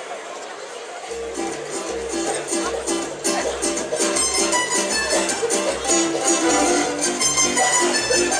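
Tamburica orchestra striking up about a second in: many plucked tamburicas playing a folk tune over a regular pulsing bass, growing louder about three seconds in. Before it starts there is only a low murmur of voices.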